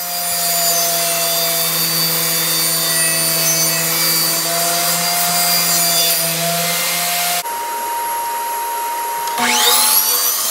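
A table saw runs steadily as it rips a thin sheet-stock panel for drawer bottoms, a steady motor hum under the cutting noise; it stops abruptly about seven seconds in. A different steady whine follows. Near the end, a Hitachi miter saw's motor starts up, its whine rising in pitch.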